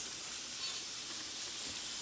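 Aerosol can of brake and parts cleaner spraying steadily onto an alloy wheel, a continuous hiss, washing sanding dust off the scuffed surface before paint.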